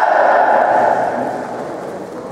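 A long, loud shout that drops in pitch and fades out about a second in.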